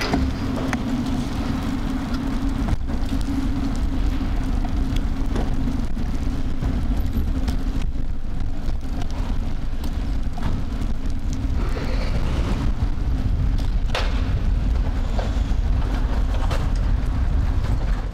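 Ride noise of a vehicle travelling along a road: a steady low rumble of wind and road under a steady hum that weakens after about the halfway point, with a few sharp ticks.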